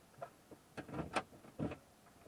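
A run of short, irregular clicks and knocks, about six in under two seconds, the sharpest a little past the middle.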